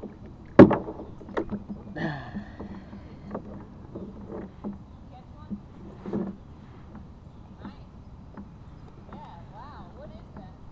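Scattered knocks, clicks and rustling of gear being handled on a kayak while a fish scale is dug out, the loudest a sharp knock about half a second in. A brief murmur of voice about two seconds in.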